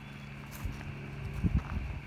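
Low outdoor background rumble with a few faint taps.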